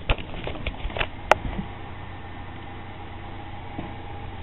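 Camera handling noise: a few knocks in the first second and a sharp click about a second in, over a steady low hum.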